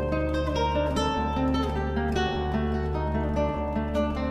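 Solo guitar music: a melody of plucked notes in quick succession, each ringing on. A deep bass note comes in at the start and is held beneath it.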